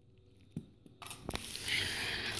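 Handling of a disassembled DVD drive's small metal and plastic parts: one sharp click about half a second in, then from about a second in a steady rustle of handling with a couple more clicks and clinks.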